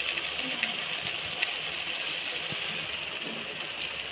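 Tomato mixture sizzling steadily in a frying pan, with a few faint clicks.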